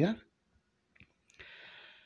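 Pause between a man's spoken phrases: one faint short click about halfway through, then a soft intake of breath.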